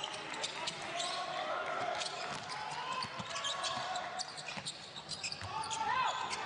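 Basketball dribbled on a hardwood court during live play, the bounces set against the murmur of crowd and players' voices echoing in an indoor arena.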